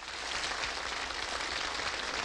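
Audience applause, a dense hiss of many claps, building slightly at first and then holding steady.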